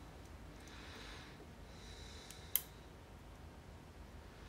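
Faint nose breathing while steel tweezers work tiny pins into a small brass lock core, with a few faint ticks and one sharp metallic click about two and a half seconds in.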